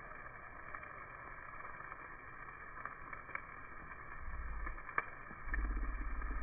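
Chicken pieces sizzling on a charcoal grill, a steady hiss broken by scattered sharp crackles and pops, the loudest about five seconds in. A low rumble comes in about four seconds in and grows louder near the end.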